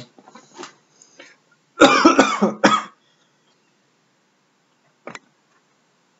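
A man coughing, a quick run of three or four coughs about two seconds in, followed a couple of seconds later by one short click.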